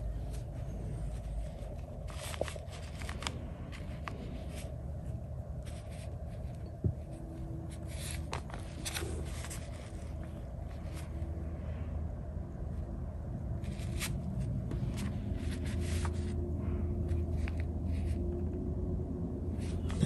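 Faint scattered rustles and soft taps of a Chinese brush being loaded and pressed onto xuan paper, over a steady low hum.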